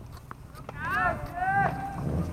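Tennis court play: sharp knocks of ball strikes and footsteps, with a few short high squeaks of shoes sliding on the court about a second in.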